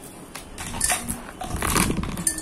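Crackling rustle and light clinking of a beaded lace trim being handled and pressed against a terracotta pot, in irregular bursts that grow busiest and loudest near the end.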